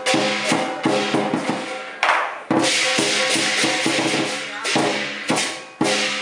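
Lion dance percussion: drum, cymbals and gong struck in a fast, driving rhythm, with the cymbals ringing. About two and a half seconds in, the cymbals crash continuously for around two seconds before the beat picks up again.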